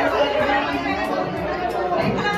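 Many voices talking at once in a hall: overlapping chatter of a group of people, children among them, with no one voice standing out.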